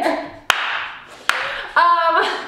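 Two sharp hand claps a little under a second apart, each dying away briefly, then a woman's voice starts near the end.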